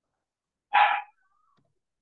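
A dog barking once, a single short, loud bark a little under a second in.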